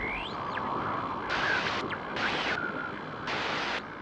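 GoPro logo intro sound effect: after a boom, a static-like hiss carries on, with a few sweeping whooshes and several short bursts of sharper hiss that cut in and out.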